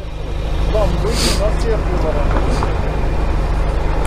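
Motorcycle engine idling steadily in stopped traffic, growing louder over the first second.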